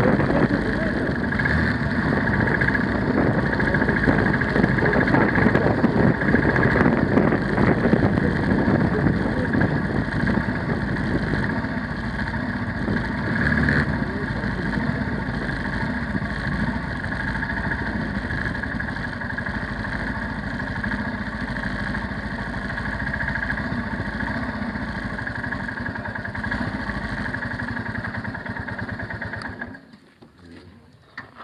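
Motorcycle engine running under way with wind rush on an onboard camera microphone. It is louder for the first dozen seconds, then steadier and quieter as the bike slows, and it cuts off sharply just before the end.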